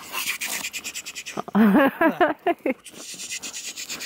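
A person's voice, one short wavering vocal sound in the middle, between stretches of rapid, even clicking.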